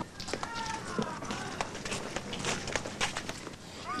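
A faint voice in the first second, over scattered light clicks and knocks and a low steady hum.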